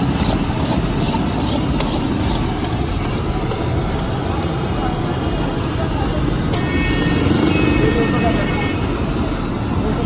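Steady, loud street noise of traffic and voices. Over it, for the first two seconds or so, quick scraping clicks about four a second come from a metal spatula stirring sesame seeds and jaggery in a large iron wok. Near the end a high warbling tone sounds for a couple of seconds.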